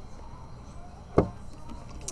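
A single sharp click about a second in, over faint low room noise.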